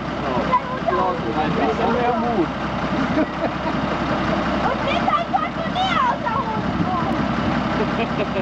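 A four-by-four engine idling steadily, with several people talking over it, loudest near the start and around two thirds of the way through.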